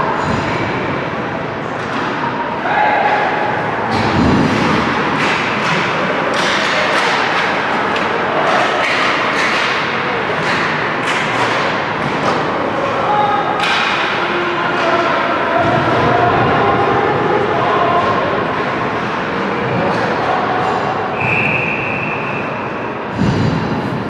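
Ice hockey play in a rink arena: sharp clacks of sticks and puck and skates scraping the ice over a steady murmur of voices and shouts. Two heavy thuds against the boards or glass come early and near the end, and a short referee's whistle blows shortly before the end.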